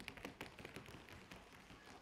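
Many metal-tipped tap shoes clattering on a stage floor in quick, irregular, faint clicks as a group of dancers run off, thinning out toward the end.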